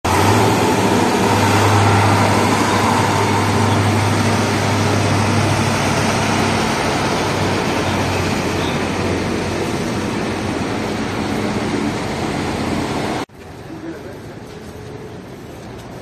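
Heavy trucks hauling tanks on trailers driving past close by, their engines loud with a deep steady drone in the first half. About thirteen seconds in, the sound cuts abruptly to much quieter street noise.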